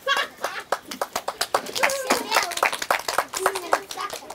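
A small audience clapping, irregular hand claps with voices talking over them.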